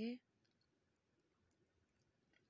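Near silence: a woman's voice cuts off just after the start, then only a few faint clicks.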